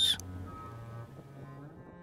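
Soft, slow background music of low bowed strings, cello and double bass, holding long notes that change pitch slowly.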